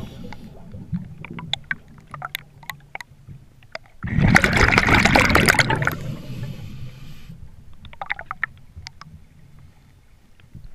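Scuba diver breathing through a regulator underwater: a loud two-second rush of exhaled bubbles about four seconds in, followed by a softer hiss, with small scattered clicks in the quieter stretches.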